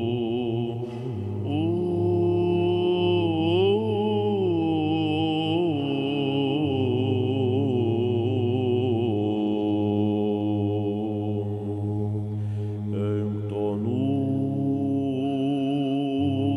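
Byzantine chant: a chanter's melody moving above a steady held drone (ison).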